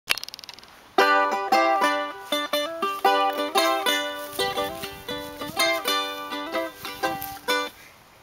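Armadillo-shell charango playing an instrumental intro: picked and strummed chords that begin about a second in and fade out just before the end, after a brief crackle at the very start.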